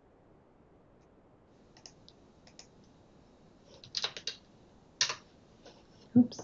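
Computer keyboard typing in short, scattered bursts of key clicks after a second or so of quiet, the loudest clusters about four and five seconds in.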